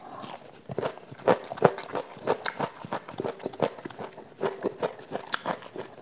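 Close-miked chewing and biting of fried chicken eaten by hand: a rapid, irregular run of short mouth clicks and smacks, several a second.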